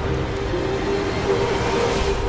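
Trailer sound design: a sustained drone with a rushing noise swell that builds toward the end and cuts off sharply.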